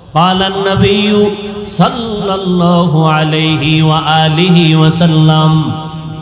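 A man's voice chanting in long, drawn-out melodic phrases, in the sung intonation of a Bangla waz sermon. The held notes slide between pitches, with a brief break about two seconds in.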